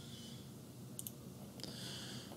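A computer mouse button clicking, a quick pair of clicks about a second in, over faint steady room hiss.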